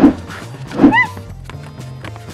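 A man imitating a dog, giving two short barks about a second apart, over steady background music.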